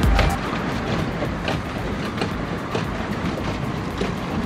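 Swan pedal boat underway: its paddle wheel churning the water with a steady rushing noise and frequent irregular clicks and knocks.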